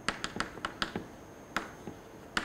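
Chalk tapping and clicking on a chalkboard as symbols are written: a quick run of about five sharp taps in the first second, then one more about one and a half seconds in.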